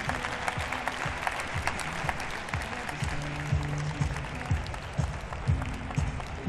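Audience applause, many hands clapping, over background music playing in the arena.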